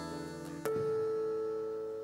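Amplified acoustic guitar notes ringing out and slowly fading, with a new note plucked about two-thirds of a second in that sustains as a clear, pure tone.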